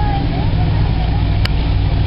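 Strong wind buffeting the microphone: a loud, fluttering low rumble, with a single sharp click about one and a half seconds in.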